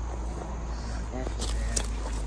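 Low rumble of a handheld phone microphone being swung about, with a brief voice sound a little after a second in and two sharp knocks soon after.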